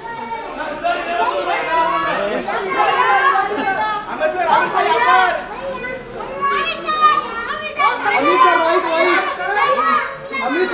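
Several voices talking and calling out over one another.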